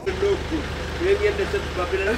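Steady low hum of a road vehicle's engine running, with muffled voices talking over it.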